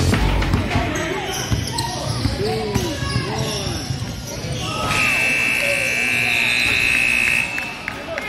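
Basketball sneakers squeaking on a hardwood court during play, with the ball bouncing and voices in the gym. About five seconds in, a steady high tone sounds for over two seconds as play stops.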